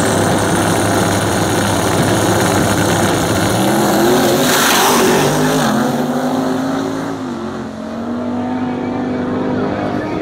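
Two drag-racing cars launching off the line and accelerating hard down the strip, engines at full throttle, with a brief louder rush near the middle. The engine note then recedes as the cars pull away into the distance.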